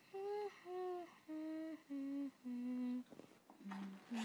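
A girl humming a slow, soft tune: six held notes stepping down, each lower than the one before.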